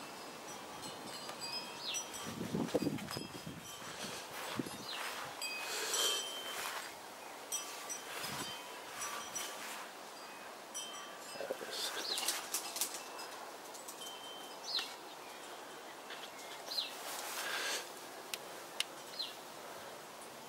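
Quiet garden ambience: scattered short bird chirps at intervals, over soft rustling and handling noise as the camera is carried through the garden.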